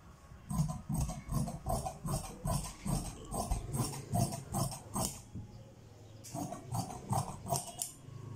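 Large steel tailor's shears cutting through two layers of lining fabric in a run of quick snips, about two to three a second. The snipping pauses a little past the middle and then starts again.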